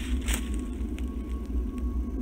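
Low, steady rumble of wind buffeting the microphone outdoors, with a short rustle about a third of a second in.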